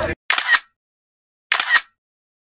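Camera shutter click sound, a quick double click heard twice about a second and a quarter apart, with dead silence between. Crowd voices cut off suddenly just before the first click.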